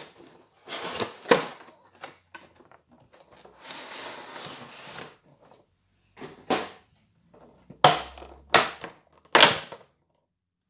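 Cardboard and plastic packaging of a trading card collection box being handled and pulled open, incredibly loud. It gives a series of sharp crackles and snaps, with a longer rustle about four seconds in and the loudest snaps near the end.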